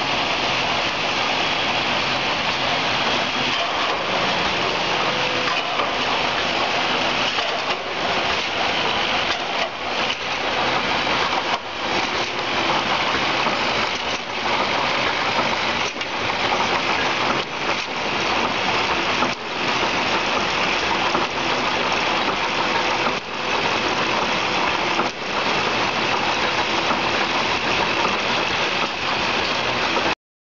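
Two-head twist-off (ROPP) capping machine for aluminium caps running: a loud, steady rushing mechanical noise, broken by brief dips about every two seconds.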